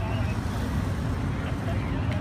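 Outdoor street ambience: a steady low rumble, such as traffic or wind on the microphone, with faint scattered voices.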